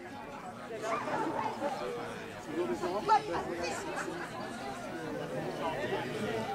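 Overlapping chatter of several people talking in the background, with no clear words, and one brief louder sound about three seconds in.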